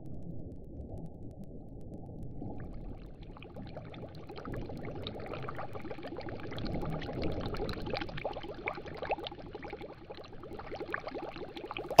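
Sound effect of a small boat moving underwater: a steady low rumble, joined about three seconds in by bubbling and gurgling that carries on.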